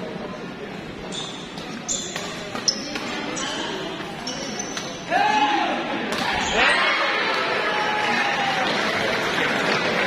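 Badminton doubles rally on an indoor court: sharp racket hits on the shuttlecock and short high shoe squeaks. About five seconds in, loud shouts and cheering from the players and crowd take over as the point is won.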